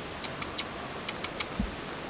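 Steady outdoor background hiss with a few short, sharp high ticks in the first half and a soft low thump near the end.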